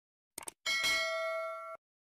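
Sound effect of a subscribe-button animation: a quick double mouse click, then a bright bell ding that rings for about a second and cuts off suddenly.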